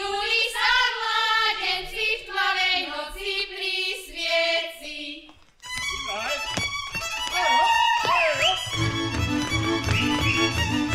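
A group of women singing a Slovak folk song, with no instruments standing out; about five and a half seconds in, after a short break, a folk string band with fiddles starts a fast dance tune, and a low bass joins near the end.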